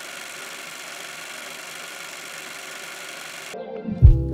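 Steady rushing wind and road noise of a car driving with its windows down. Music cuts in near the end.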